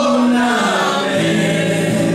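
A man singing a long held note that slides down in pitch about a second in, over two acoustic guitars.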